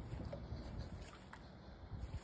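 Faint low rumble of wind on the phone microphone, with a few tiny soft ticks.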